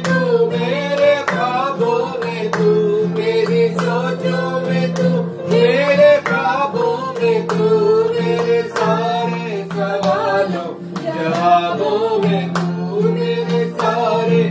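A man and a woman singing a worship song together, accompanied by a guitar.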